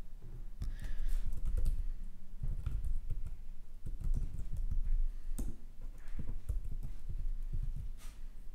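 Typing on a computer keyboard: an irregular run of key clicks with short pauses, as a line of code is entered.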